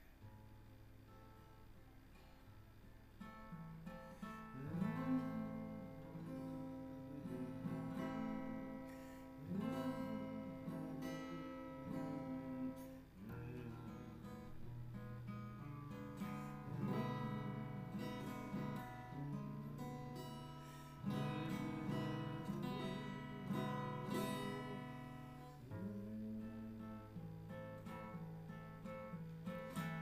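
Instrumental introduction to a waltz song, played on acoustic guitar. It starts softly and grows louder after a few seconds.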